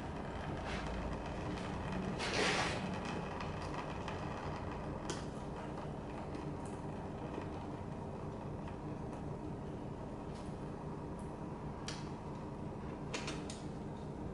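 Hand work on a dirt bike engine during teardown: scattered sharp clicks and clinks of parts and bolts being handled and dropped into a metal drain pan, with a louder brief scrape about two seconds in, over a steady low hum.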